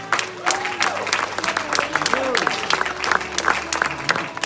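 Congregation applauding, with a few voices calling out in rising-and-falling cries over the clapping.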